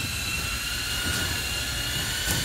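A machine running steadily: an even low rumble with a thin, high whine held at a constant pitch.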